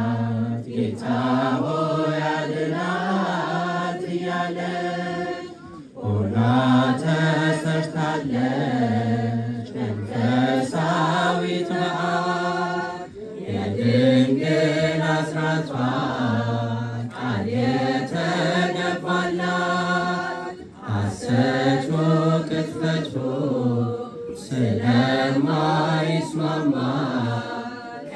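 Women's choir singing an Ethiopian Orthodox Tewahedo mezmur (hymn) together in a chant-like style, in long sung phrases with brief breaths between them.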